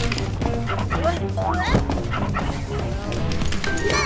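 Cartoon background music with an animated puppy's short barks and yips. A sharp knock about halfway through is the loudest sound.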